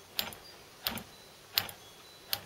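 Lucas RS1 magneto turned slowly by hand, its spark snapping across a test spark plug's gap in three sharp, evenly spaced ticks. It is a good strong spark at such a slow speed.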